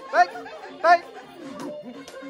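A group of people chattering over one another, with two short, loud, rising calls from one voice about a quarter second and about a second in, and background music running underneath.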